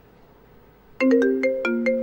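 A phone ringtone starts suddenly about a second in: a quick melody of marimba-like notes.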